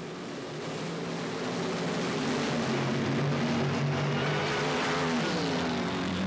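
Funny car engines at full throttle down a drag strip: a loud, steady engine noise that builds in the first second, then falls in pitch near the end.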